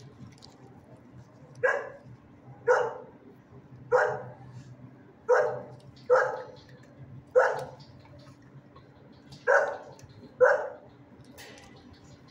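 A dog barking, eight single barks about a second apart with a pause in the middle, each ringing briefly off the hard walls of a shelter kennel.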